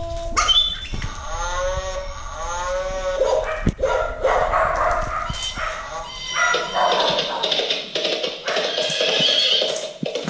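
Children's electronic music mat set off by puppies' paws, playing a run of dog-like calls from about a second in. Mixed electronic tones and sounds follow as more pads are pressed.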